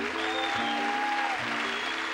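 Jazz band with archtop electric guitar playing chords in a steady rhythm, with one long held note that bends at its end, over audience applause.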